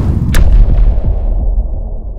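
Intro sound effect of an explosion: a loud rushing blast with a sharp crack about a third of a second in, then a deep rumble whose hiss dies away as it fades.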